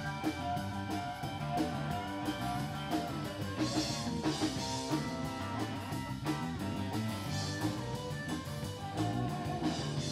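Live rock band playing an instrumental stretch: electric guitar over electric bass and a drum kit keeping a steady beat, with no singing.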